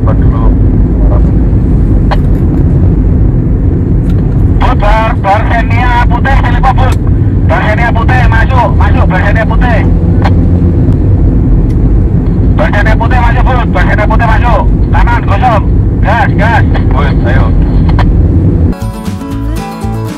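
Loud, steady low rumble of road and engine noise inside a moving car, with voices talking at intervals over it. Near the end it cuts suddenly to acoustic guitar music.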